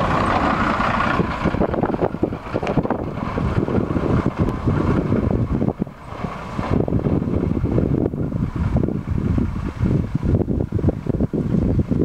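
Orange school bus passing close by and driving away, its engine noise strong for about the first second and then fading. Gusty wind buffets the microphone with a low rumble for the rest.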